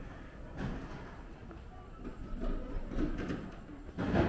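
Outdoor street ambience: a steady low rumble with faint, indistinct voices of passers-by in the second half and a soft knock about half a second in.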